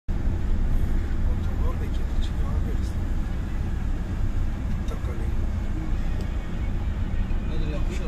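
Steady low rumble of a running vehicle heard from inside its cabin, with a few faint voices in the background.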